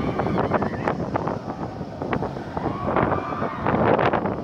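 A steel roller coaster train running along its track, with wind buffeting the microphone and faint background voices.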